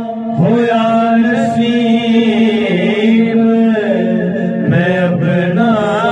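A man's solo voice singing a Punjabi naat, a devotional song in praise of the Prophet, into a microphone. He sings long held, wavering notes over a steady low drone, beginning a new phrase about half a second in and again near the end.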